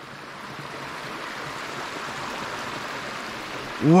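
Rain-swollen creek water rushing over a washed-out beaver dam: a steady hiss of flowing water that grows slightly louder.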